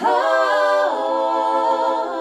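A vocal trio of two women and a man singing a cappella in close harmony. They come in together and hold sustained chords, changing to a new chord about a second in.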